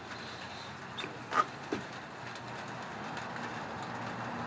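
Low, steady background noise, with a few brief knocks and clicks between about one and two seconds in.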